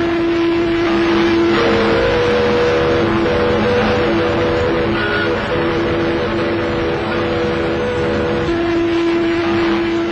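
Ships' whistles sounding a long, steady low-pitched note with a few short breaks, over a constant rushing noise, as a liner is taken off her berth by tugs.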